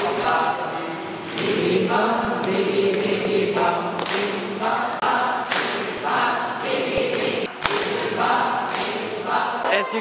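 A large group of young people chanting a rhythmic camp song together in short repeated phrases, with sharp knocks marking the beat.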